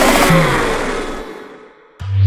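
A horror sound-effect swell on the soundtrack, a loud whooshing rumble that dies away steadily over about two seconds until it is faint.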